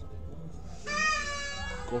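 A single high-pitched animal call, about a second long, holding its pitch and then sliding down at the end, heard over a steady low hum.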